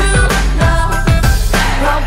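Pop song with a sung vocal over a steady kick-drum beat.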